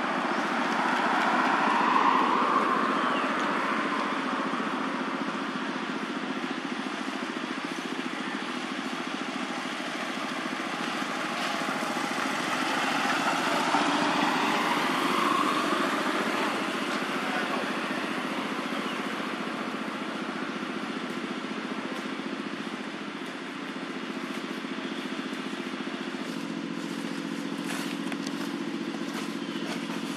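Motorbike and road traffic noise: a steady engine hum with louder passes about two seconds in and again around fourteen seconds, where the pitch rises and falls as a vehicle goes by.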